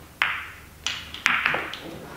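Pool balls clacking: about five sharp clicks with short ringing tails, spread over less than two seconds, as a shot is struck and the balls collide.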